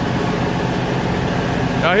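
A diesel tractor engine idling steadily, a constant low hum.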